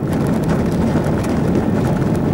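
A car driving along an unsealed dirt road, heard from inside the cabin: a steady rumble of engine and tyres.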